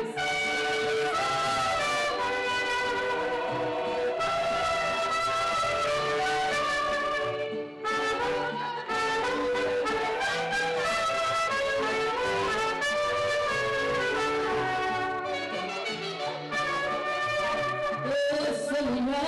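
Mariachi-style band music led by trumpets, playing an instrumental passage with sustained brass notes and a brief break about eight seconds in.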